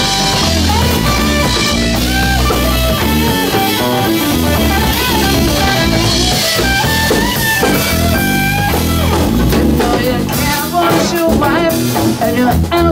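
Live blues-rock trio playing: an electric guitar lead line with bent notes over bass guitar and a drum kit, with no vocals.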